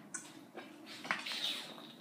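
Someone drinking from a plastic sports bottle: a few small clicks and knocks of the bottle, with a short hiss of sipping or air about a second in.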